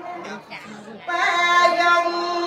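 A woman singing solo into a microphone: a slow melody of long held notes that drops to a softer passage just under half a second in, then comes back louder on a sustained note about a second in.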